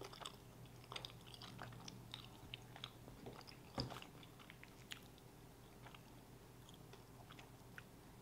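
Faint chewing of flaky croissant pastry, with small crackles scattered through and one louder one about four seconds in.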